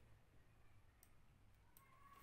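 Near silence: faint room tone with a couple of faint short clicks, about a second in and near the end.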